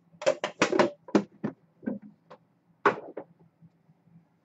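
Handling noise from a trading-card tin and its packaging being moved aside: a quick run of short knocks and rustles in the first second and a half, then one sharper knock near three seconds.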